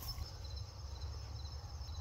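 Crickets trilling steadily in the grass, a thin high continuous tone, over a low rumble.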